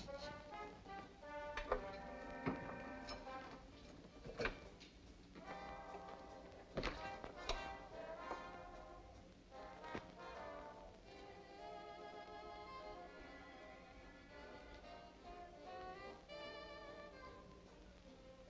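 Orchestral film score with strings and brass, played softly, with a few sharp hits in the first half.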